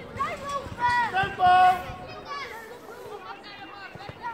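People calling out on a football pitch: several short shouted calls, the longest and loudest about a second and a half in, then fainter voices.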